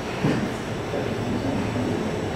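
Low, indistinct murmur of voices over a steady rumble of room noise.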